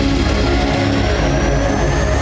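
Television news theme music with deep bass notes, overlaid by a rising swoosh sound effect.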